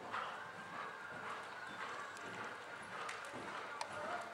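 A horse's hoofbeats on the sand footing of an indoor riding arena, with a sharp click near the end.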